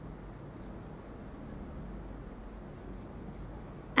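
Toothbrush bristles scrubbing up and down across the inner surfaces of a plastic dental model's teeth and braces brackets: a faint, steady rubbing.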